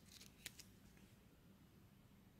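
Near silence: faint room tone, with one short faint click about half a second in, as a trading card in a rigid plastic holder is handled.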